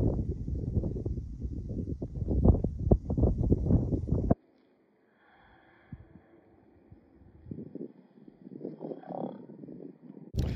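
Wind buffeting the microphone in strong, irregular gusts, a deep rumble that cuts off suddenly about four seconds in. After that only faint, low wind noise remains.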